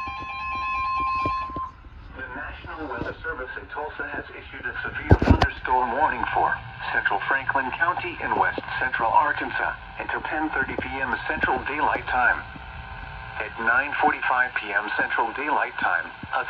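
Eton weather alert radio sounding a steady high alert tone for about two and a half seconds. It then plays a synthesized voice reading a severe weather warning through its small speaker. A sharp thump comes about five seconds in.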